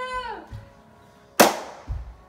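A voice slides down in pitch, then about a second and a half in comes a single loud, sharp crack with a short ringing tail, followed by a soft low thump.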